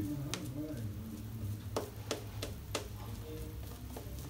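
Double-edge safety razor fitted with a vintage Persona blade scraping through lathered stubble in a handful of short strokes, over a low steady hum.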